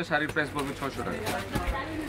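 Speech: voices talking, with no other clear sound.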